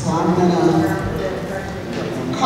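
Indistinct speech: several people talking among themselves in a large room, too unclear for the words to be made out.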